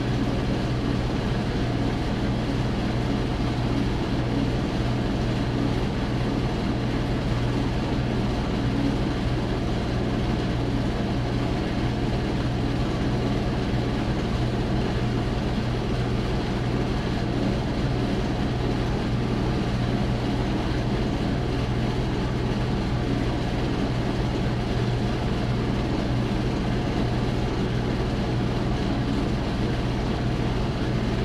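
Half-horsepower electric motor running steadily inside a closed box, spinning an aluminium disc of magnets under copper bars to make heat, with a constant low hum over the rush of air from an inline duct fan. The sound does not change.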